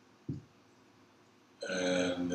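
A man's short wordless voiced sound, held for under a second, starting near the end. A soft low knock comes about a third of a second in.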